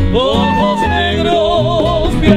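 A small Cuban conjunto playing a bolero: silver flute and men's voices carry a wavering melody with vibrato over classical nylon-string guitar and bongos.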